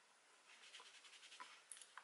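Very faint rubbing and light scratching of a pad wiping a lipstick swatch off the skin of a hand, starting about half a second in, with a few tiny clicks; otherwise near silence.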